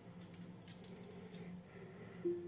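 Faint kitchen handling noises: a few soft clicks and crinkles as sliced tomato is picked up off a wooden cutting board and laid on patties on a foil-lined baking tray, over a faint low hum.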